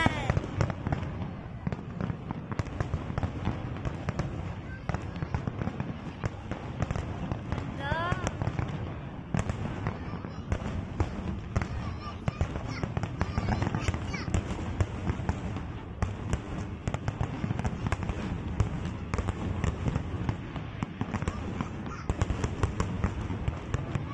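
Aerial fireworks display going off continuously: a dense, uneven run of sharp bangs and crackles over a steady low rumble.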